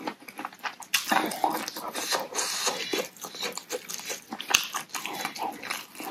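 Close-up eating sounds: slurping and chewing of spicy rice vermicelli soup, with a quick run of wet clicks and smacks.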